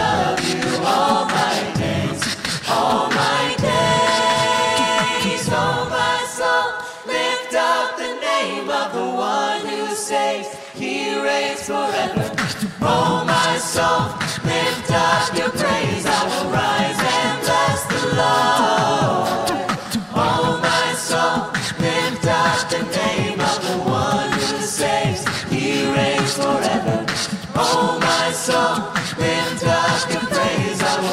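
A mixed choir of men and women singing a worship song a cappella in harmony through microphones. The low voices drop out about seven seconds in and the full group returns a few seconds later.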